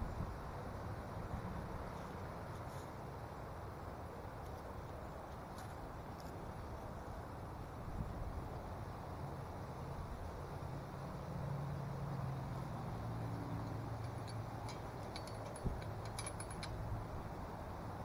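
Outdoor ambience: a steady background rumble of distant road traffic, with a low hum swelling about ten seconds in, as of a vehicle passing, and a few faint ticks near the end.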